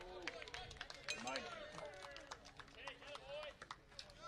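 Baseball game sound: several voices calling out and shouting from around the field and dugout, mixed with scattered sharp hand claps.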